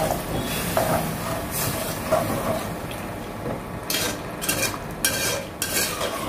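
A spoon stirring mutton curry in a pressure cooker pot as water is poured into the gravy. There are several sharper scrapes against the pot in the last two seconds.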